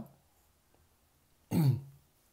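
One short vocal sound from a man, falling in pitch, about a second and a half in, after a quiet pause.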